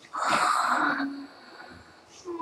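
A person's breathy, unvoiced exhalation, about a second long, that fades out.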